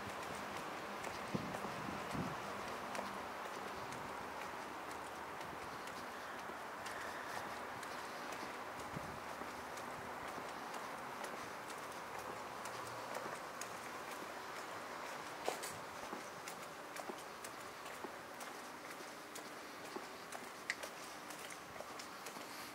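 Footsteps of someone walking on a paved city street, as scattered light clicks over a steady hum of distant city traffic.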